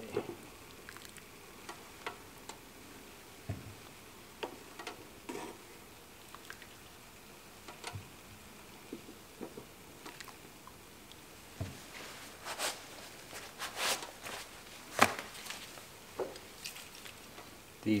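Light clicks and knocks of hot rubber intake manifolds being lifted out of a pot of water and set down on the workbench, with water pouring out of them back into the pot. A few louder knocks come near the end.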